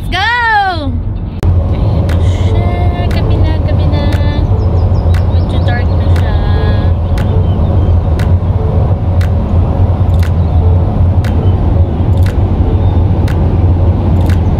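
Car cabin road noise while cruising on a highway: a steady, loud low rumble of tyres and engine, with faint ticks about once a second. A brief voice sound comes first, cut off about a second and a half in.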